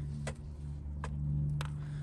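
A steady low mechanical hum, with a few sharp light clicks over it about a third of a second, one second and one and a half seconds in.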